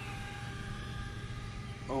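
Six-inch FPV quadcopter's motors and propellers holding a steady, even-pitched hum as it cruises away at low height. A man's voice comes in right at the end.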